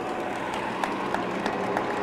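Applause from a small gathered audience, separate claps heard over a steady hum.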